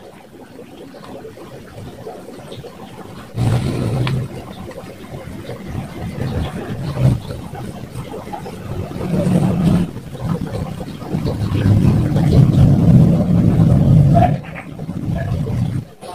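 A motor vehicle's engine rumbling nearby. It starts suddenly about three seconds in, swells and grows loudest near the end, then drops away shortly before the end.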